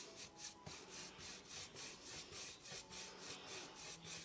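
Faint, quick, repeated strokes of a paintbrush's bristles dabbing gold acrylic paint onto the rim of a tray.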